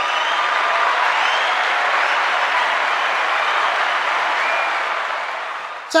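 Crowd applause with a little cheering, played back as a canned sound effect; it holds steady and then fades out near the end.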